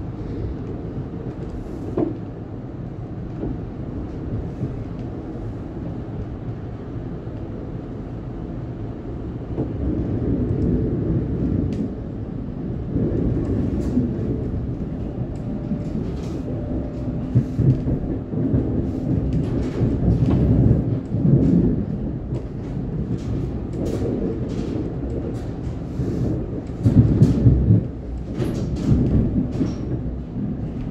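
Cabin noise of a Siemens Nexas electric suburban train under way: a steady low rumble of wheels on rail with a faint hum, growing louder about a third of the way in. Through the second half, sharp wheel clacks and knocks come from the track, with the loudest burst of rumble near the end.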